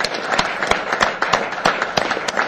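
A roomful of people applauding, with many sharp individual claps standing out irregularly.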